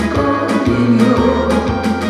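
Live trot song: a woman singing into a microphone over a backing track with bass and drums.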